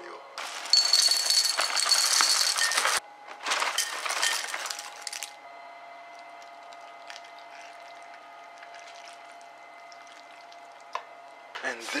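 Dry cereal flakes poured into a ceramic bowl, a dense clinking rattle in two bursts over the first five seconds. Then a much quieter stretch as milk is poured over them from a carton.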